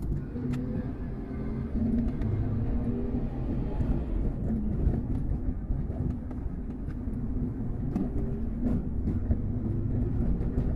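Car engine and tyre noise heard from inside the cabin while driving slowly: a steady low rumble with faint wavering engine tones and a few light ticks.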